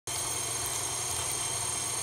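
KitchenAid stand mixer motor driving its meat grinder attachment, running steadily with a high whine while grinding pork.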